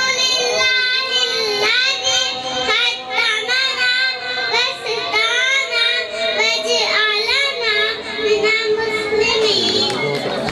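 Young children reciting Islamic devotional verses (dua and kalima) in a melodic, sing-song chant through microphones. The chanting stops just before the end.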